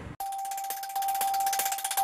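Opening of a news channel's electronic outro jingle: one steady held tone with a rapid, even ticking pulse over it, starting abruptly just after a sudden cut.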